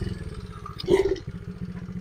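Single-cylinder engine of a 70cc pit bike running steadily at low speed as the bike rolls, with a brief louder burst about a second in.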